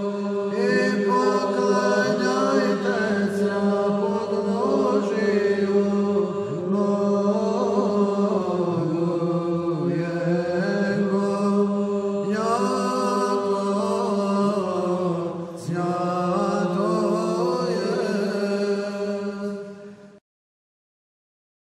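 Male monastic choir singing Byzantine chant in Old Slavonic, in the second tone: a melody moving over a steadily held drone note (the ison). The chant fades out at the very end.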